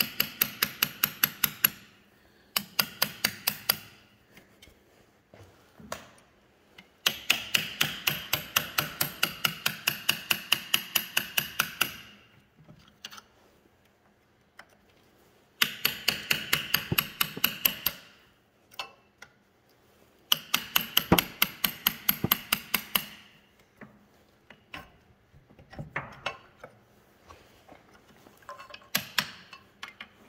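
Hammer striking a steel chisel wedged in the joint of a 1936 Caterpillar RD-4 brake band, driving the bolted top section of the band apart. The strikes come in quick runs of about four to five a second with a metallic ring, with pauses between runs and a few single taps near the end.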